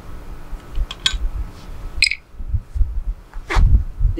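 Light clicks and handling sounds as a plastic pen-style TDS meter is uncapped and dipped into a glass of water, over an uneven low rumble, with a dull thump near the end.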